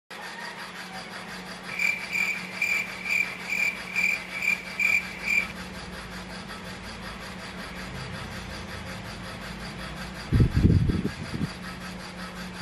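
A steady low hum, with a run of about eight short high chirps, roughly two a second, in the first half. Near the end comes a loud burst of rubbing and bumping as the phone is shifted on the bed.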